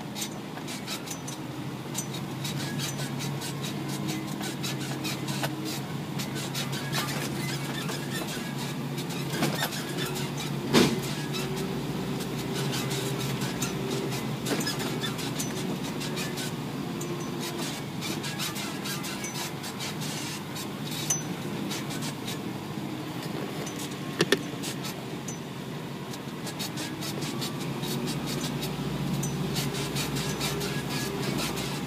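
Isuzu NPR 4WD truck's diesel engine running at low, slowly drifting revs while driving, with frequent small clicks and rattles from the truck bumping along; one sharper knock about eleven seconds in.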